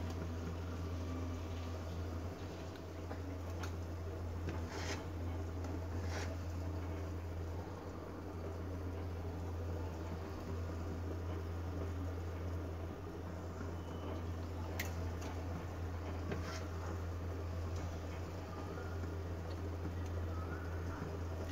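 Steady low background hum, with a few faint soft clicks scattered through it.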